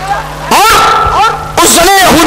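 A man's loud, drawn-out exclamations through a microphone, in the raised, half-sung delivery of a sermon: two strong calls, the first starting about half a second in and held for about a second, the second near the end.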